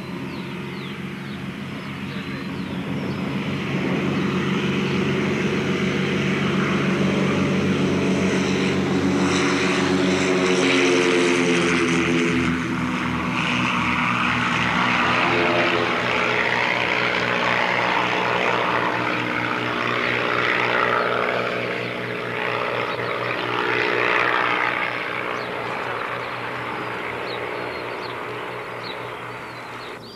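Twin-engine propeller aeroplane taking off: the engines run at full power, growing louder over the first few seconds as it comes down the grass strip and passes, then fading steadily as it climbs away.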